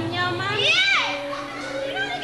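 A woman's voice in a high, stylised exclamation of Balinese drama gong dialogue that sweeps up in pitch and back down about halfway through, with steady held tones underneath.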